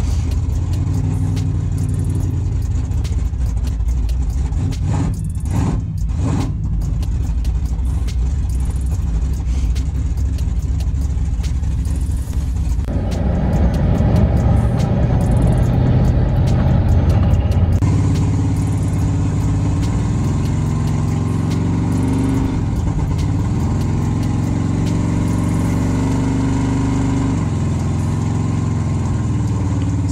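Pickup truck's newly installed engine, on new EFI, heard from inside the cab while driving. It runs at a steady cruise, pulls harder and louder for about five seconds from roughly 13 s in, then settles back to a steady cruise with small rises and falls in revs.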